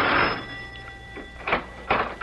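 The end of a radio-drama music bridge fades out in the first half-second. It is followed by a few sharp clicks and knocks, a front-door sound effect as a visitor is let in.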